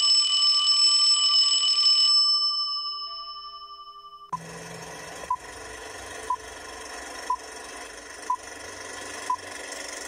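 A bright electronic chime rings out and fades over about four seconds. Then the crackle of an old film projector starts, with a short beep once a second: a film-leader countdown sound effect.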